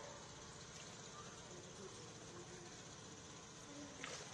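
Faint, steady outdoor background noise, an even low hiss with no distinct event.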